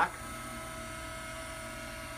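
Electric motor of a tilting chiropractic table running as it raises the table toward upright: a steady hum with a thin, fixed-pitch whine over it.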